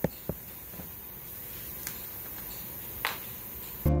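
A few small clicks and a brief swish of handling at the bench over a steady low background noise, then background music with a beat starts just before the end.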